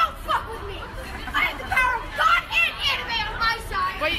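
Children's voices chattering, higher in pitch than an adult's.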